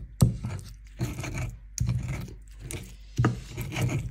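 Pestle grinding boiled green chillies and tomato against a stone mortar (cobek) while making sambal: about five rasping, rubbing strokes, a little over one a second.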